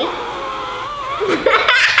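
Girls laughing and giggling, the laughter picking up about halfway through.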